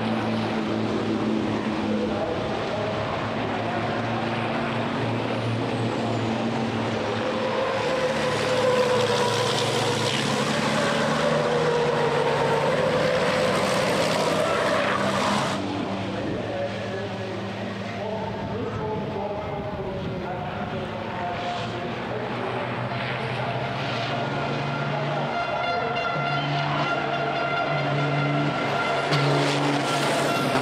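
Turbo-diesel racing truck engines running at speed on a circuit. The sound swells to a loud pass-by about halfway through and then cuts off suddenly.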